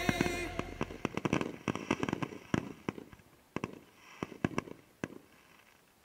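Consumer aerial fireworks at the end of a finale of fused cakes and artillery shells, heard from about a block away: a rapid, irregular string of sharp bangs and cracks that thins out and stops about five seconds in.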